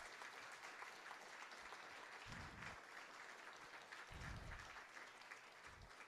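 Faint, steady audience applause, a dense patter of many hands clapping, at the end of a talk.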